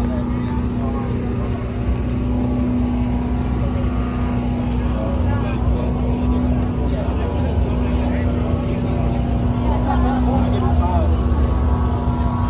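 A steady engine drone with a constant hum, unchanging in pitch, over faint crowd voices.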